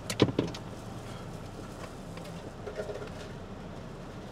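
Car engine idling, heard from inside the cabin as a steady low hum, with two or three sharp clicks just after the start.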